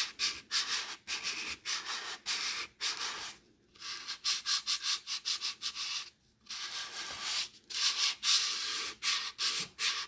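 Folded sandpaper rubbed by hand over the bare wooden underside of a salad bowl in light back-and-forth strokes: a dry, scratchy rasp at about three strokes a second, with short pauses about three and a half and six seconds in.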